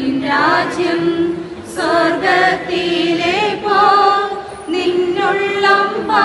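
A congregation singing a hymn together, men's and women's voices on long held notes.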